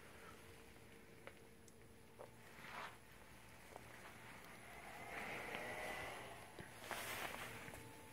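Mostly quiet: faint rustling and handling noise with a few soft clicks, heard over a low steady hum.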